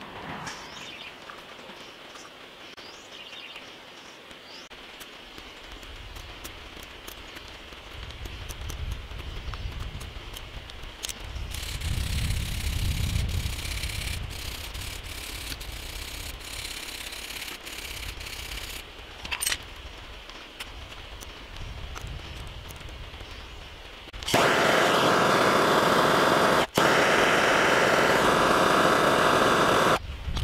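Hand wire brush scrubbing chips and caked oil off a steel nut on a mill handwheel, a rough scratching rasp for several seconds. Near the end a loud steady hiss starts and runs on, with one short break.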